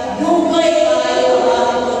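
A voice over a public-address system holding long, drawn-out notes, as in singing.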